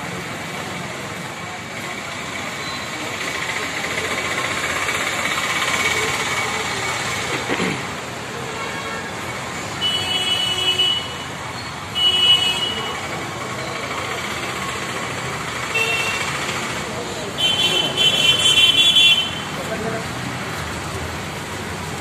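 Vehicle horns sounding in short blasts, four or so, the longest lasting over a second near the end, over a steady background of street traffic noise.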